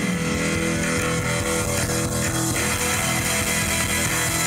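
Live rock band playing electric guitar, bass and drums through a PA, loud and steady without a break.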